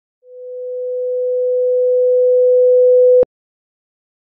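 A synthesized pure sine tone, one steady mid-pitched note, swelling steadily from soft to loud over about three seconds: a demonstration that a larger wave amplitude makes a louder sound. It cuts off abruptly with a click near the end.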